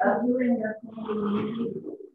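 Voices talking through a video call as a group meeting breaks up, the words unclear to the recogniser, with a short break a little under a second in.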